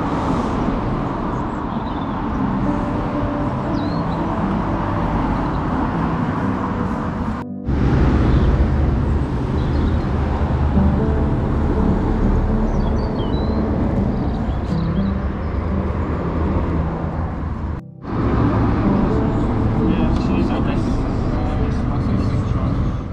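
Outdoor ambience of a café terrace beside a road: indistinct voices and passing road traffic under a steady, loud, low rushing noise. The sound breaks off abruptly twice, about a third and four-fifths of the way through.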